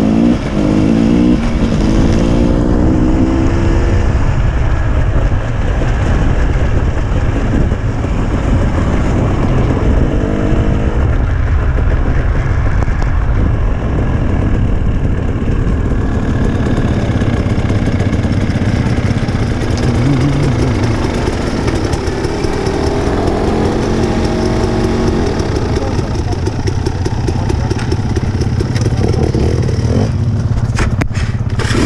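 Enduro dirt bike engine running under load on a rough gravel track, its revs rising and falling several times.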